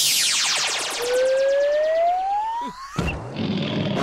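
Cartoon sound effects for a thrown grappling hook: a fast falling whizz, then a rising whistle of about two seconds that stops abruptly about three seconds in.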